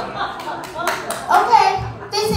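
A few sharp hand claps in quick succession around the middle, with voices speaking around them.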